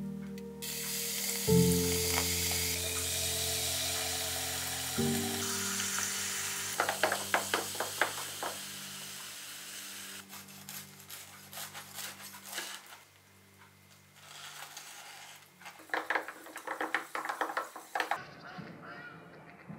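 Carbonated soda fizzing in a glass jar over muddled lime and mint, a bright hiss of bubbles that fades over several seconds, with a short run of light clicks midway. Background music plays throughout.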